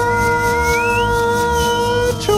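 A voice holding one long, steady sung "saaaa" over a backing track with a steady low beat, while a thin high whistle-like tone glides up and back down above it; the held note stops at the very end.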